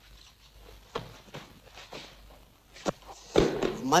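Footsteps and shuffling of people moving about during a hand-to-hand drill, with a few short knocks and one heavier thud near the end.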